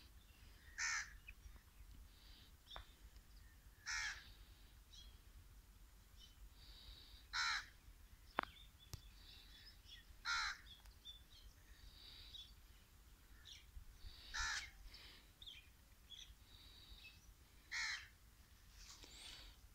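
A crow cawing single caws, six in all, spaced about three to four seconds apart, with faint smaller bird chirps between them. There is one sharp click a little before halfway.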